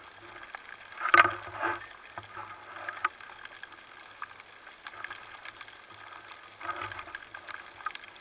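Underwater recording of a diver loading a wooden roller speargun: muffled knocks and scrapes of the rubber bands and line against the gun, loudest about a second in and again near the end, over a bed of faint scattered clicking.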